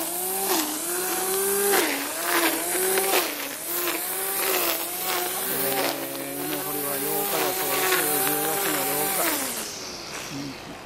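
Corded electric string trimmer running, its motor whine wavering and dipping in pitch again and again as the spinning line bites into the grass, with a hiss of cut grass over it. Near the end the whine falls away as the motor winds down.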